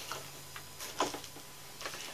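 A few light clicks from a small cardboard box holding a contour gauge being handled and opened: two close together about a second in, and another near the end.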